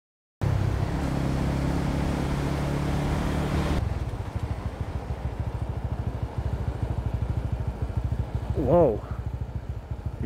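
Motorcycle engine running steadily while riding, with wind rushing over a helmet-mounted microphone. The wind noise drops away about four seconds in, leaving the engine's steady running, and a brief voice sound comes near the end.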